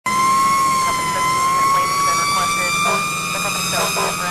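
Fire engine's siren heard from inside the cab: one high, steady tone that climbs slightly in pitch, with radio voices breaking in from about halfway through.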